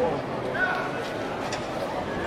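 Indistinct voices talking in the background over a steady outdoor noise, with no clear words.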